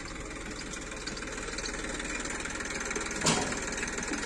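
Diesel tractor engine running steadily as it powers a hydraulic back-loader. About three seconds in there is a brief rush of noise as a bucket-load of dung is dumped into the trolley.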